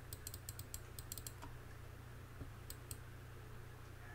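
Faint computer keyboard clicks: a quick run of keystrokes in the first second or so, then two more later on, over a low steady hum.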